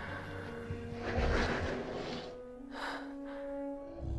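Quiet film score holding sustained notes, with a long breathy rush of air about a second in and a shorter one near three seconds.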